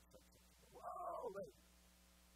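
A man's voice making one drawn-out, wavering cry, starting about a second in and lasting under a second, over a faint steady room hum.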